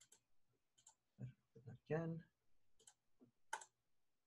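A mostly quiet stretch with a few faint, sharp clicks spread through it and a brief murmured voice sound near the middle.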